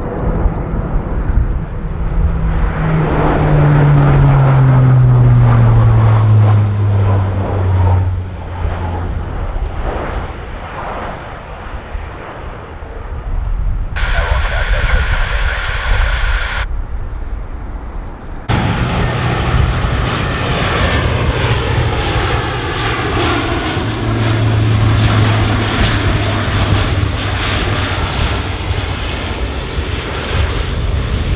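Four Rolls-Royce AE 2100 turboprops of a RAAF C-130J Hercules flying low overhead, their deep propeller drone dropping in pitch as the aircraft passes. After that comes a steady, loud propeller drone as it comes in on approach with the gear down.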